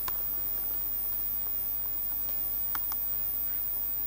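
A few faint computer-keyboard key clicks over a steady low hum.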